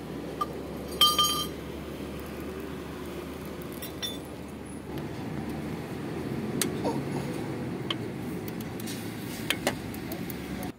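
Metal clinks of a socket and ratchet being fitted onto the timing belt tensioner bolt to loosen the tensioner. The loudest is a ringing clink about a second in, followed by a few lighter ticks over a steady low background hum.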